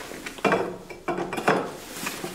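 A few metal-on-metal knocks and clanks, each ringing briefly: the steel head of a hand-held electric nibbler bumping against the edge of a steel channel as it is fitted into the tool's throat, with the motor off.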